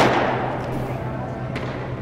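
A pitched baseball smacks into a catcher's mitt right at the start and rings out briefly in the room. A fainter knock follows about a second and a half later.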